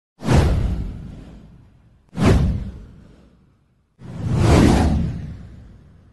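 Three whoosh sound effects of an animated title-card intro, about two seconds apart: the first two hit suddenly and fade away, the third swells in more gradually before fading.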